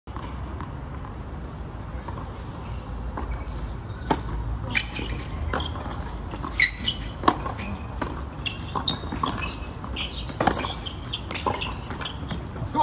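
Tennis ball being struck by rackets and bouncing on a hard court during a rally: a series of sharp, irregular hits beginning a few seconds in, over a steady low rumble.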